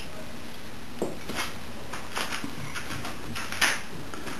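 A handful of light clicks and clatters from objects being handled and set down on a workbench, the loudest near the end, over a steady faint hiss.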